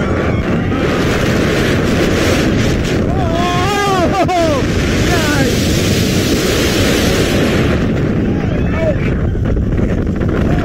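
Steel roller coaster ride heard from the rider's seat: a steady rush of wind on the microphone over the rumble of the train on the track. Riders scream about three seconds in, again around five seconds, and briefly near the end.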